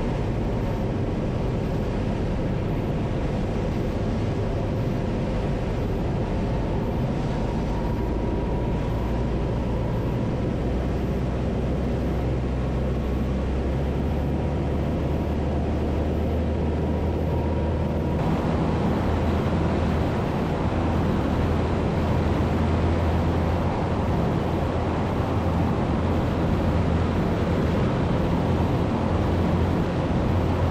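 Zenith CH-750 Cruzer's piston engine and propeller running steadily in flight, heard from on board. About 18 seconds in, the sound turns suddenly fuller and a little louder.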